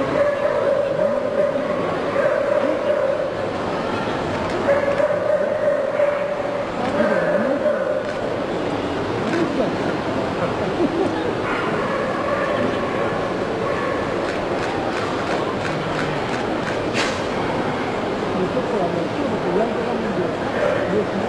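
A dog barking amid the steady chatter of a crowd in a large hall.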